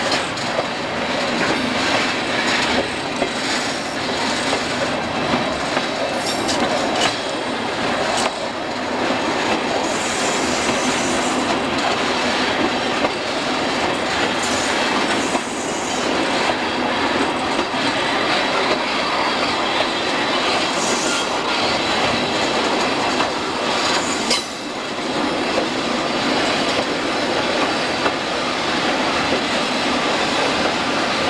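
Train riding along the track, heard on board: a steady rolling rattle of wheels on rail, broken by many irregular clicks and knocks.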